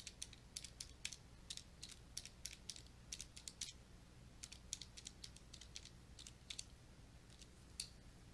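Faint clicks of calculator buttons being pressed in an irregular run of a few presses a second, pausing about six and a half seconds in, with one last press near the end.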